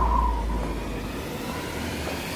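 Film sound effects of an aerial free-fall: a steady low rumble with rushing wind. A brief high tone fades away in the first half second.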